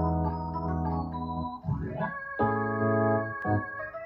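Pre-recorded backing track of long, held organ-like keyboard chords, breaking off briefly a little before halfway and then moving to a new chord.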